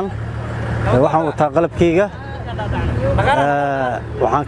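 A voice chanting a short refrain over and over, ending on a long held note near the end, over a steady low hum.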